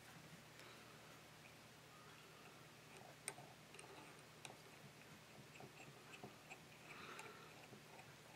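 Near silence with a few faint ticks and light handling noise from tying thread wrapped with a bobbin holder around a hook in a fly-tying vise. The clearest tick comes about three seconds in.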